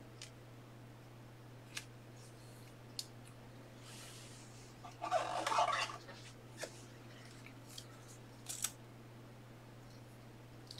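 Quiet handling sounds at a desk: scattered light clicks and a short rustle or scrape about five seconds in, typical of trading cards and card holders being handled, over a steady low hum.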